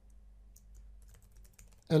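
Faint typing on a computer keyboard: a few scattered light key clicks.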